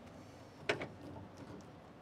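Quiet handling of interior trim pieces: two light clicks close together a little under a second in, then faint room noise.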